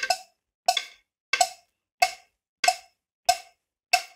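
Cowbell struck with a wooden drumstick in a steady beat, about three strikes every two seconds, each strike ringing briefly.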